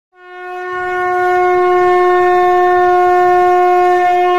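One long note blown on a horn-like wind instrument, swelling in over the first second and then held steady at one pitch.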